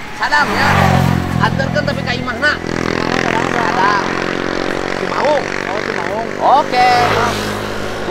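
A motor vehicle engine running at a steady speed under men's talk. It is loudest as a low rumble in the first two seconds.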